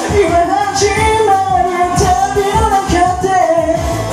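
Karaoke: a voice singing the Japanese lyrics of a J-pop dance song over its backing track, with a steady beat under the melody.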